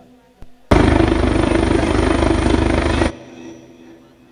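A loud burst of noise with a fast low rattle in it, starting abruptly about a second in, holding steady for two to three seconds and cutting off sharply.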